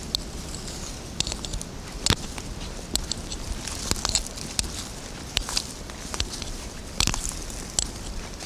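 Footsteps crunching on dry fallen leaves on a dirt path, an uneven run of crackling steps with a couple of louder ones about two seconds in and near the end.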